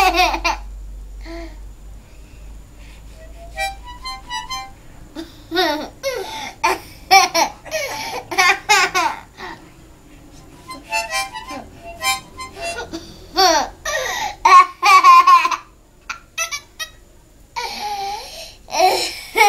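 A toddler blowing and drawing on a small harmonica in short, uneven bursts of chords, with gaps between them and a pause near the end.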